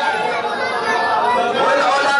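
Men's voices talking over one another, a break between the long held sung lines of a male vocalist performing on a microphone.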